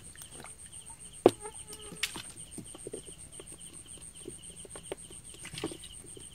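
Night insects, crickets, trilling steadily with a pulsing chirp beneath. A sharp knock comes just over a second in, and faint wet clicks come from hands working through mud and fish in a plastic basket.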